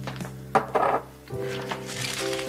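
A small glass dropper bottle is set down on a desk: a sharp knock about half a second in, with a brief rustle after it, over soft background music.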